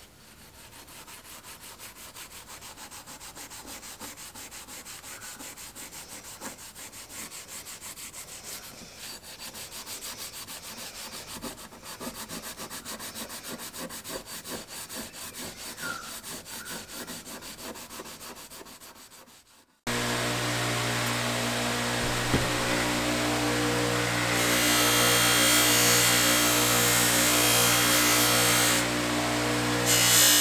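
Extremely fine steel wool wet with mineral spirits scrubbed rapidly back and forth by hand over a rusty straight razor blade, taking off the rust. About two-thirds of the way through this gives way abruptly to a bench grinder running with a steady hum. A few seconds later the blade is held against a spinning buffing wheel, adding a loud high hiss.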